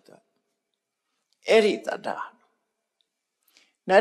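A man's speech in Burmese: one short phrase in the middle, long silent pauses either side, and a faint mouth click shortly before the talk resumes near the end.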